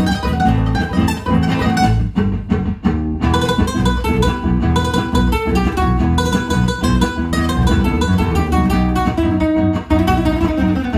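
Nylon-string acoustic guitar played fingerstyle, with quick runs of plucked notes in a flamenco-jazz fusion style.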